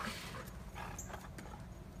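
A dog moving about, its footfalls making a few faint, light taps over a steady low background rumble.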